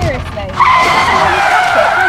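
Tyre screech sound effect: a sudden loud squeal starts about half a second in and holds a steady pitch that sags slightly, over a low rumble.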